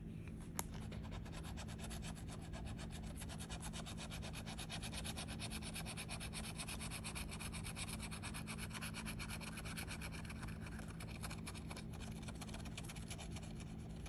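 A bottle-opener-shaped scratcher tool scraping the coating off a scratch-off lottery ticket's winning-numbers panel in rapid, even back-and-forth strokes. A single sharp tap comes about half a second in, and the scraping thins out near the end.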